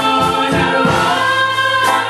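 Gospel choir of children and adults singing together, several voices into handheld microphones, holding sustained notes.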